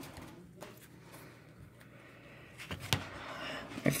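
Faint handling of trading cards in clear plastic sleeves: soft rustling with a light click about half a second in and a couple more near the end.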